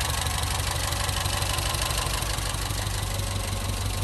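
Citroën CX GTi Turbo 2's 2.5-litre turbocharged four-cylinder engine idling steadily.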